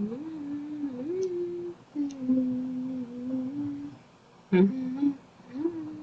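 A person humming a tune, holding notes that step up and down in pitch, with a short break about two seconds in and a longer pause near four seconds, followed by a brief sharp sound.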